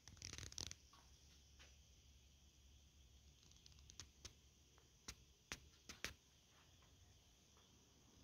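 Near silence: faint room tone with a short rustle just after the start and a handful of faint clicks about halfway through.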